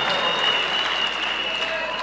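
Large crowd in an arena applauding, with a high steady tone held above the clapping; the applause eases off slightly toward the end.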